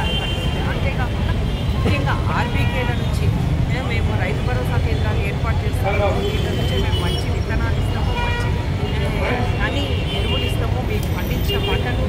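A woman speaking continuously into press microphones, over a steady low rumble.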